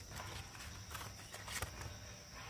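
Firm green fruits knocking against each other and the woven bamboo basket as hands move them about, with leaves rustling: a handful of light knocks, the loudest about one and a half seconds in.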